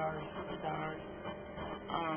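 Speech: a voice talking, over a faint, steady low hum.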